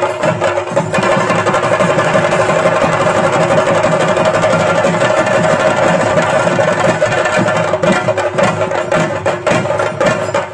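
Chenda drums played in a fast, dense, continuous rhythm, with a steady ringing tone running underneath. The strokes come out sharper and more separated from about eight seconds in.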